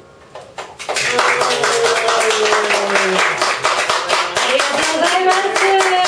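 Small audience applauding at the end of a live song: a few scattered claps about a third of a second in, swelling to steady applause within the first second, with voices calling out over it.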